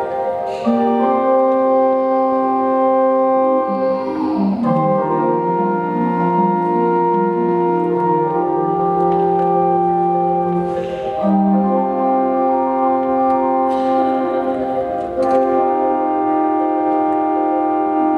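Church pipe organ playing slow, sustained chords that shift every few seconds, with a few short noisy accents from the ensemble over them.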